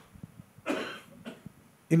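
A person coughing once, briefly, about two-thirds of a second in, with a fainter sound just after it.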